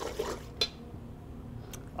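A liquid egg-and-cream mixture swishing faintly as a hand works it in a stainless steel mixing bowl, with a short click about half a second in.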